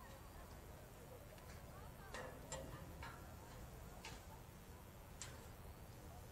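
Faint outdoor ambience with a low steady hum, faint distant voices, and a few sharp clicks from about two seconds in.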